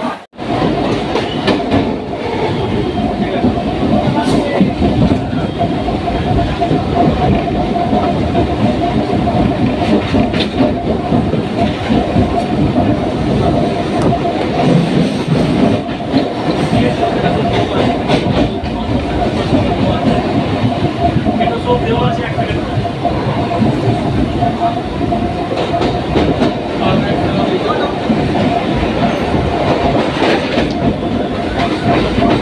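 Suburban passenger train running at speed, wheels clattering over the rail joints, heard from the open doorway of a coach, with a steady whine over the clatter.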